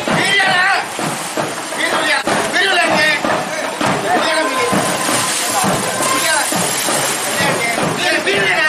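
People talking continuously, with water sloshing around in a pool underneath the voices.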